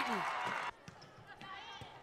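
Crowd and gym noise at an indoor volleyball match stops abruptly less than a second in. A quieter hall follows, with a few faint thumps of a volleyball on hardwood.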